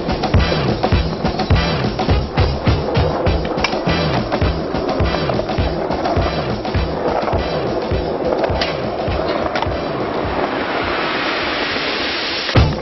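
Music with a steady, driving drum beat and a repeating bass line.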